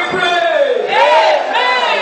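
A congregation praying aloud all at once, many voices overlapping, with one voice rising loudly above the rest about halfway through.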